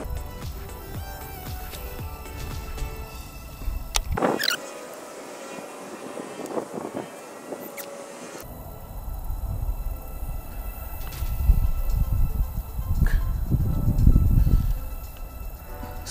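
Background music with steady sustained tones, over low wind rumble on the microphone that cuts out for a few seconds and then grows loud in the second half.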